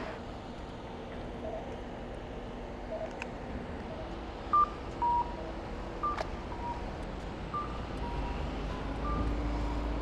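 Japanese audible pedestrian crossing signal giving the walk cue: a repeated two-note, high-then-low electronic call, cuckoo style, starting about four and a half seconds in and sounding about every second and a half. Street traffic hums underneath, and a vehicle's rumble grows near the end.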